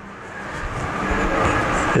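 Rushing vehicle noise that grows steadily louder, with no clear rhythm, as a vehicle approaches.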